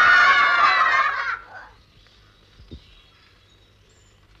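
A group of children shouting together, many voices at once, cutting off about a second and a half in. After that there is only faint hiss and a single soft knock.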